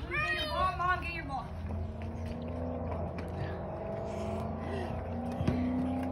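A voice for the first second or so, then a steady low engine drone, like a motor vehicle running nearby.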